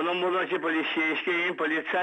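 A man talking steadily, his voice thin and narrow, as heard over a telephone line.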